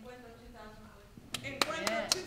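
A few sharp, separate handclaps, about four a second, starting a little over a second in, over faint speech.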